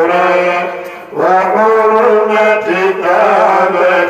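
A man chanting Arabic devotional verse into a microphone, in long held, wavering notes, with a short break for breath about a second in.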